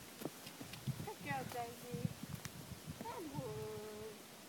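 A person's two long, drawn-out calls, the second falling and then held on one steady note: voice commands to a young horse on the lunge line. Dull hoofbeats on soft ground sound beneath.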